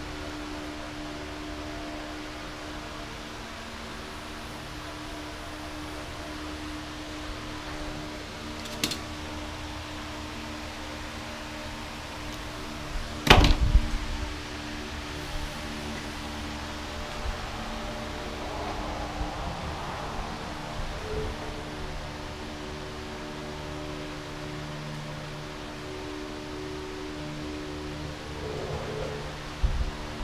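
Soft ambient background music with faint handling noises of wire and small parts. There is a sharp click about nine seconds in and a louder knock a few seconds later, with another knock near the end.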